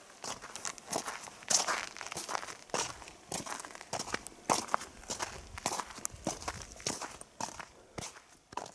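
Footsteps of a person walking on frosty gravel ground, an even pace of about two steps a second.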